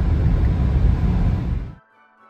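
Steady low road and engine rumble inside a car's cabin at motorway speed. It cuts off abruptly near the end, where faint music begins.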